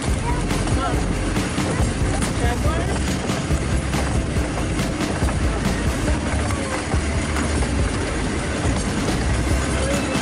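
Steady rumble and rattle of a small open passenger train running along its track, with indistinct voices of riders mixed in.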